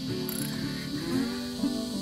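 Socket ratchet wrench clicking in a short rattle of pawl clicks about a third of a second in, under steady background music.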